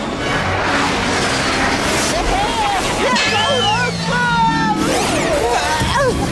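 Cartoon soundtrack of music and sound effects: a rushing flight noise for the first couple of seconds, then short wordless voice sounds and gliding effect tones.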